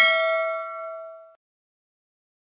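A single bell-like ding sound effect, the chime of a subscribe-button notification-bell animation. It rings with several clear tones and fades out within about a second and a half.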